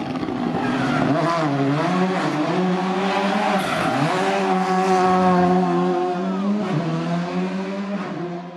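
Volkswagen Polo GTI R5 rally car's turbocharged four-cylinder engine running hard through a roundabout, the revs dipping and climbing again about one and a half and four seconds in, then holding high and steady.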